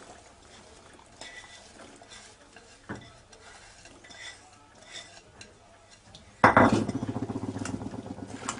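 Diced apple tipped into a glass mixing bowl of thick carrot-cake batter with a few faint knocks and rustles, then from about six and a half seconds in a utensil stirring the batter, a loud, rapid scraping and knocking against the glass bowl.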